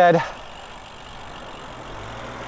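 Steady rush of wind and tyre noise from a road bike rolling along a paved road, slowly building, with a faint low hum coming in near the end.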